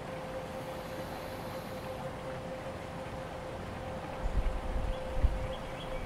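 Quiet outdoor background with a steady faint hum running throughout, and a low rumble, like wind on the microphone, over the last two seconds.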